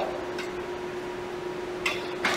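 A steady hum of shop background noise with one constant tone through it, and a single short click near the end.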